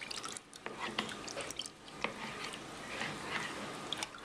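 Molasses and water dripping and sloshing as a metal measuring cup is stirred and scraped in a mixing bowl, with many small irregular clicks and ticks.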